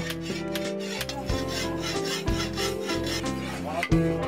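Steel file rasping back and forth over a hand-forged iron blade in repeated strokes as a blacksmith sharpens it.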